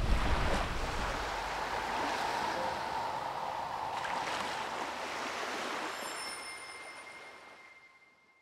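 Sea surf washing, a steady hiss of waves that slowly fades out near the end, with faint high ringing tones coming in over the last two seconds.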